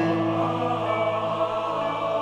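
A choir holds a sung chord over a grand piano chord struck at the start, which then rings under the voices.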